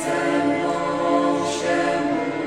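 Small mixed choir of men and women, a parish schola, singing a hymn in long held notes.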